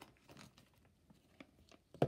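Near silence with a few faint crinkles and ticks of plastic toy packaging being handled.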